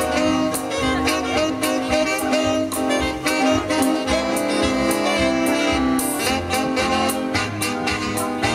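Live big-band swing jazz, instrumental: a saxophone section plays the tune over a drum kit keeping a steady beat of about two strokes a second.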